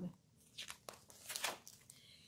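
Faint rustle of a large picture book's page being turned: a few soft, short paper crackles over about a second.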